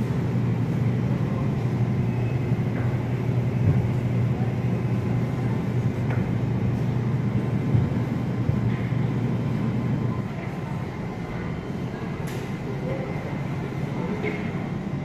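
Steady low hum and rumble of supermarket background noise, easing a little about ten seconds in.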